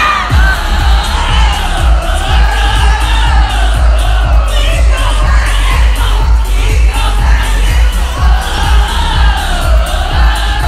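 Live pop music played loud through a festival stage's sound system, with a pounding bass beat and singing over it, and a crowd cheering, heard from inside the crowd.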